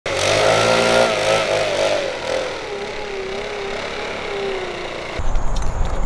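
A motor vehicle engine running, its pitch wavering up and down. It cuts off abruptly about five seconds in and gives way to a low rumble.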